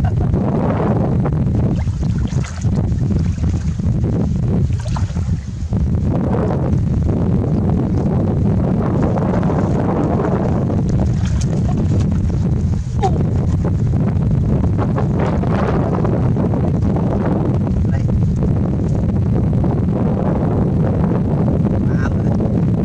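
Wind buffeting the microphone: a steady, heavy low rumble throughout, with the broken hiss of moving air above it.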